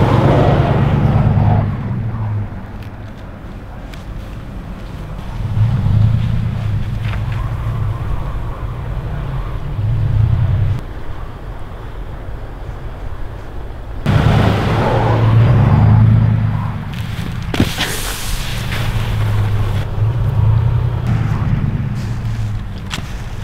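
Truck engine running and revving in repeated surges of a few seconds each, easing off between them, with a sudden louder rush of noise about two-thirds of the way through.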